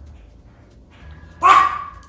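A small terrier barks once, about one and a half seconds in, a short sudden bark.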